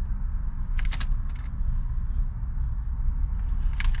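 A steady low rumble, with a few brief crackles of a plastic bag about a second in and near the end as rotisserie chicken is pulled apart by hand.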